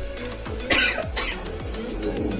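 A woman coughs twice in quick succession, a little under a second in, over steady background music.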